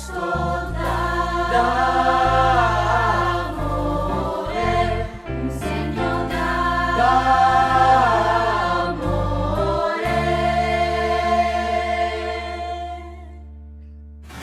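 A Christmas song sung by a choir over instrumental backing with held bass notes, ending on a long held chord that fades out shortly before the end.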